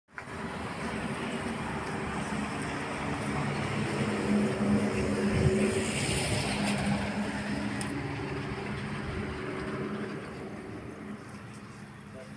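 A motor vehicle's engine running with steady noise, growing louder to a peak about halfway through and fading toward the end.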